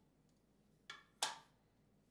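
Two short knocks about a second in, a third of a second apart, the second louder: hard objects being handled, a tool or part picked up or set down.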